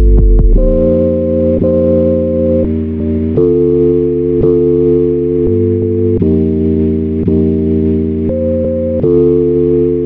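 Instrumental boom-bap style hip-hop beat in a stretch without drums: sustained sampled chords over a low bass line, changing about every one to one and a half seconds.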